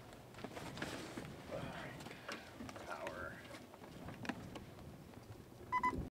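Faint, indistinct voices with a few light clicks of handling. A short two-tone beep sounds near the end.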